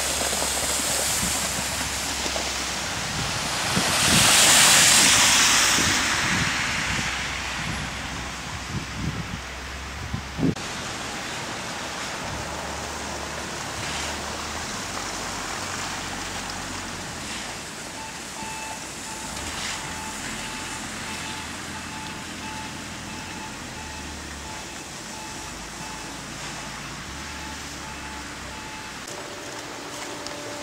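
Traffic on a slush-covered road: a vehicle's tyres hiss through wet slush, swelling to the loudest point about four to five seconds in. A few sharp knocks follow near ten seconds, then steady, quieter vehicle noise continues.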